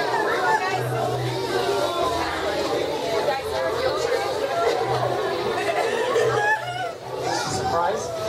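Many voices chattering at once, none clear, with music playing underneath.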